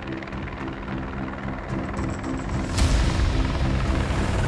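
Helicopter in flight with its rotor beating steadily, under background music of long held notes. The sound swells louder about three-quarters of the way through.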